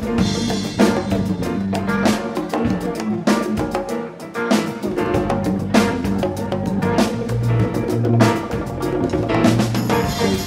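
Live rock band playing an instrumental passage: drum kit hits over electric guitar, bass and keyboard, with changing bass notes underneath.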